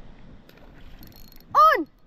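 A fishing reel gives a faint, light clicking as line is wound in. About a second and a half in, a loud shout of 'On!' marks a fish hooking up.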